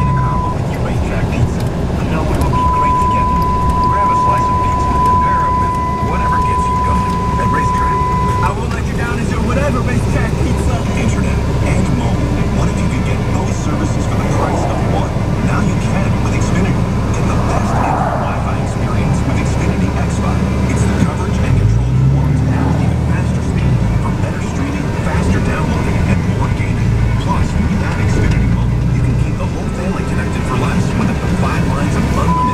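Inside the cab of a 2007 Dodge Ram 3500 pickup under way: steady engine and road drone, with the engine note rising a little past twenty seconds in as the revs climb. This comes with the transmission fault of the torque converter locking and unlocking and the truck not shifting into overdrive. A steady high-pitched tone sounds for the first several seconds, with a short break.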